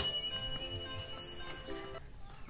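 Subscribe-button sound effect: a sharp click followed by a bright bell chime ringing out and fading over about a second and a half.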